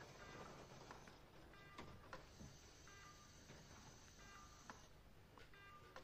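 Near silence in a hospital room, broken by a few faint, short electronic beeps from bedside patient-monitoring equipment at irregular intervals.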